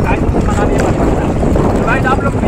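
Loud, steady wind buffeting the microphone, with people's voices talking faintly in the background.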